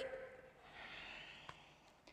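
A woman's faint breath during an exercise lift, a soft breath of under a second near the middle, with a faint tick shortly after.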